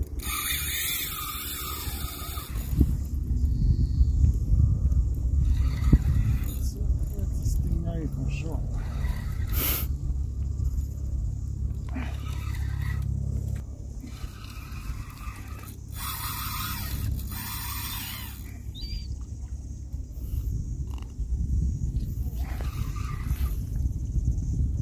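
Wind buffeting the microphone in a steady low rumble, with brief louder rushes of hiss near the start and again about two-thirds of the way through.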